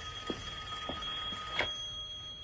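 Mobile phone alarm ringing: a steady electronic tone held on two pitches at once, with a few faint clicks under it.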